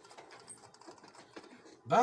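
A near-silent pause with faint, rapid clicking, then a man's voice begins speaking near the end.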